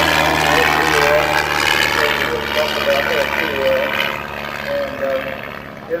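Wittman Buttercup light aircraft's engine and propeller droning as it flies past overhead, fading away over the last few seconds. A man's voice over a loudspeaker talks on top of it.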